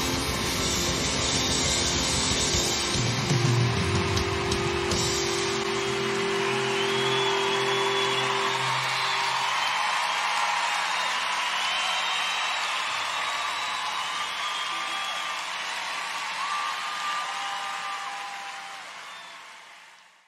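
A rock band's final chord rings out on amplified guitars and drums, then stops about nine seconds in. A large crowd keeps cheering, with high whoops and whistles, and fades out at the end.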